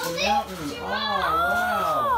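Children's voices in wordless calls and chatter, with a higher held call in the second half.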